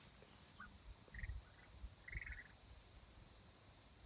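Near silence with a few faint, short chirps from young Muscovy ducks, the longest about two seconds in, over a steady faint high-pitched hum.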